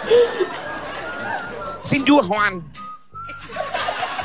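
A person whistling a few short high notes, once about a second in and again near the end, with a burst of laughing voices in the middle.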